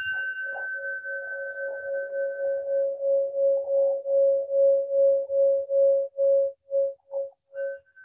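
Singing bowl ringing out after a single strike, rung to close a seated meditation. Its low tone pulses in a slow wobble that gradually fades, while a higher ring dies away about three seconds in; a faint high ring returns near the end.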